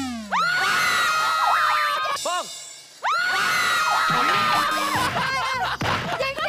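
Two long, high-pitched screams from women, each lasting about two seconds, the second starting about three seconds in, followed by laughter and excited voices near the end.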